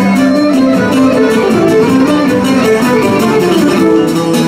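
Live Cretan folk band playing an instrumental passage of an omalos dance: a violin carries a stepping melody over a steady, strummed plucked-string accompaniment, amplified through a PA.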